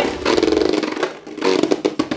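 A Beyblade Burst spinning top whirring on the plastic stadium floor, rattling with rapid small clicks as it grinds and wobbles against the bowl, with a brief dip a little past one second in.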